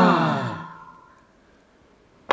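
A group of voices drawing out an awed "wooow", falling in pitch and trailing off within the first second.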